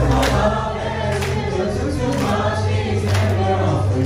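Mixed choir singing an English-language song into handheld microphones over a backing track with a beat about once a second.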